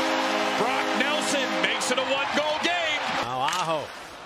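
Arena goal horn sounding a steady chord over a cheering crowd right after an Islanders goal. The horn stops about a second and a half in, and shouting voices and music carry on over the crowd, with a loud rising-and-falling shout near the end.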